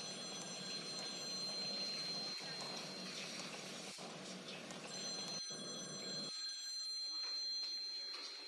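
A faint, steady high-pitched ringing tone over a low hiss. The tone drops out for a couple of seconds in the middle, and the hiss cuts off suddenly a little after six seconds in.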